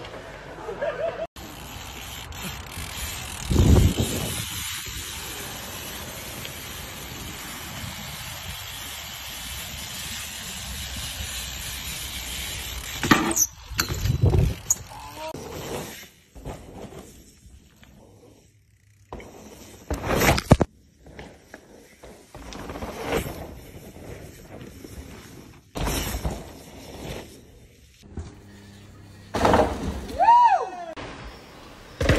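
Mountain bikes riding down dirt trails: a steady rush of wind and tyre noise for the first dozen seconds, then a quieter stretch broken by several separate thuds of the bikes hitting the ground.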